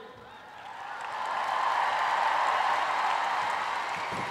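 Applause from a large audience, rising over the first two seconds and then easing off slightly.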